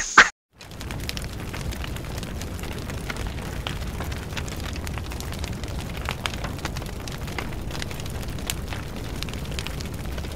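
A short loud burst at the very start, then a steady crackling rumble with scattered small pops.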